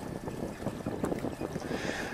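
Wind and water noise aboard a sailboat under way: a steady hiss with many small crackles.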